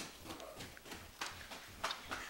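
A few faint footsteps on the floor, with the clearest taps about a second in and near the end.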